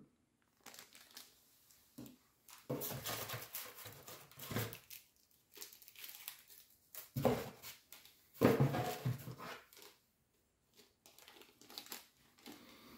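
Thin plastic packaging rustling and crinkling in several short irregular bouts, as small zip-lock bags of accessories are handled.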